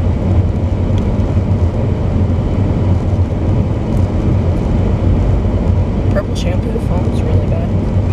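Moving car heard from inside the cabin: a steady low rumble of road and engine noise.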